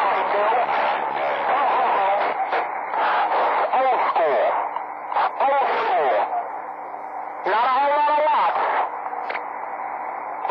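Voices of distant stations received over a CB radio's speaker, unclear in a steady hiss and band-limited to a thin radio sound. The signal fades down twice, about halfway through and again near the end.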